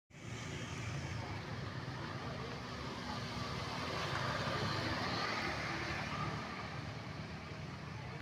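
Road traffic, mostly motor scooters riding past, as a steady hum that swells briefly about halfway through as one passes close.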